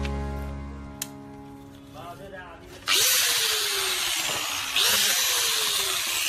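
Background music with a brief spoken word, then about three seconds in an angle grinder with a smoother abrasive wheel starts grinding the burnt metal of a pan. The loud, harsh grinding carries a motor whine that falls in pitch as the wheel is pressed into the metal, and it grows louder again near the end.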